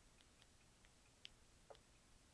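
Near silence with about half a dozen faint, scattered clicks from stepping through the Apple TV's on-screen search keyboard with the remote.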